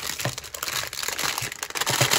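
Clear plastic cellophane bag crinkling and crackling continuously as hands open it around rolls of foil and washi tape, very noisy.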